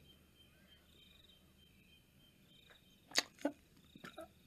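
Faint cricket chirping, a few short spells of high trilling, in an awkward silence. Two short sharp clicks about three seconds in, a quarter-second apart.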